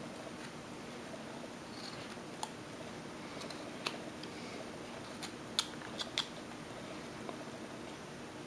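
Carving knife cutting into a small wooden figure by hand: faint cuts with a handful of short, sharp clicks as the blade bites and chips break off, most of them bunched together in the second half, over a steady low hum.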